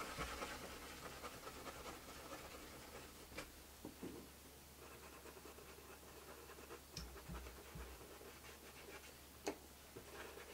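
Faint scratchy dabbing of a small dome paintbrush, blotted on a paper towel and then pounced onto a wooden leaf cutout, with a few light taps.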